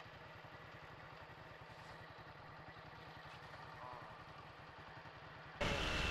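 Motorcycle engine running steadily, heard faintly as a low, even rumble. About half a second before the end the sound abruptly becomes much louder.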